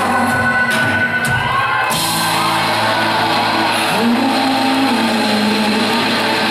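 Live pop-rock band playing in a large hall, electric guitars holding sustained chords. The drum beat drops out about two seconds in, leaving held notes over a wash of noise.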